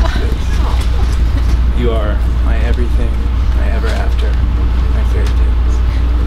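Quiet, indistinct voices over a loud steady low rumble.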